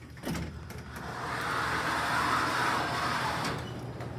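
Hydraulic elevator's sliding doors opening: a click near the start, then a smooth whoosh that swells over about two seconds and fades, over a steady low hum.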